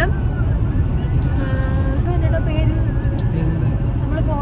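Steady low road and engine rumble inside a moving car's cabin, with a faint voice or singing in the middle.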